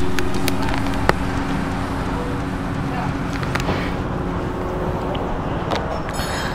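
Motorcycle workshop background: a steady low hum that slowly fades, with a few sharp clicks and taps.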